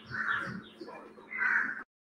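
Two short animal calls, one just after the start and one about a second and a half in, over a faint steady hum.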